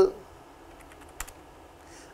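A few faint computer keyboard keystrokes as a word is typed, one click sharper than the rest a little past the middle, over low room tone.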